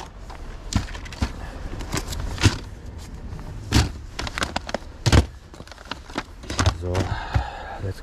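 Irregular clicks and knocks of items being handled and set down in a car boot: plastic DVD cases clacking against each other and a plastic basket being moved, with a few louder knocks.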